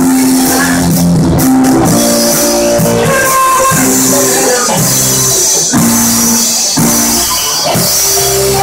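Live band playing loud rock music, with electric guitar and a drum kit.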